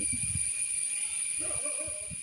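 Outdoor background with a steady high-pitched insect drone and a fainter tone beneath it, plus a low rumble in the first half-second. A faint wavering call comes in about one and a half seconds in.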